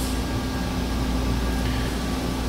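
Steady low room hum with a faint held tone, unchanging throughout; no speech.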